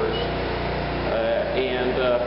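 Portable generator running steadily in the background, a constant low engine drone, with a man's voice coming in during the second half.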